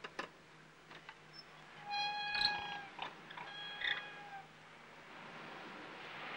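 Wooden window shutters being pushed open: a few clicks from the latch, then the hinges give two squeaks, each about a second long and steady in pitch.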